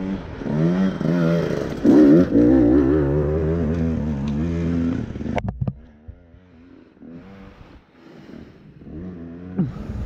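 Dirt bike engine revving unevenly, its pitch rising and falling with the throttle for about five seconds, then dropping to a quieter low-throttle run. Sharp clicks and clatter join it from about halfway, as the bike rides over rocks.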